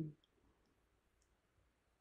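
Near silence: room tone in a pause, with a few very faint clicks.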